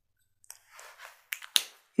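Whiteboard marker on a whiteboard: a soft, brief scratchy stroke and a few faint clicks as the marker is lifted away.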